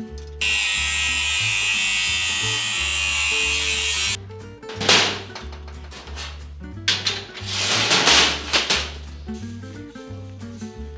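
Background music with a steady bass line. Over it a loud, steady whirring noise starts abruptly just after the start and cuts off about four seconds later, followed by two shorter noisy swells.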